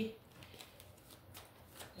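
Faint handling of tarot cards on a cloth mat: a few soft, brief clicks and rustles as the cards are touched and the hand lifts away.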